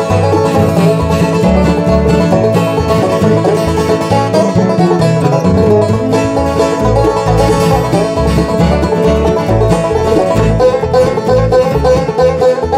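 Bluegrass band playing an instrumental break between verses: banjo, mandolin, acoustic guitar, fiddle and upright bass, with the bass plucking a steady beat.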